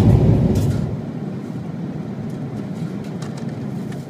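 Steady airliner cabin noise, a low engine drone with air hiss. It drops over the first second to a quieter, even level.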